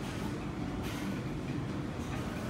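Steady low rumble of restaurant room noise, with a short brighter noise about a second in.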